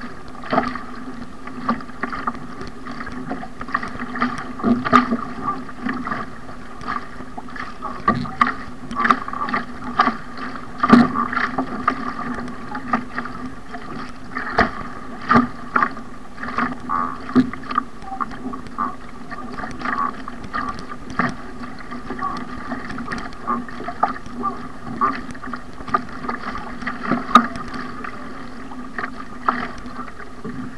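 Ocean ski (surfski) paddling at race pace: the wing paddle blades catching and splashing in choppy sea about once or twice a second, with water rushing along the hull over a steady hum.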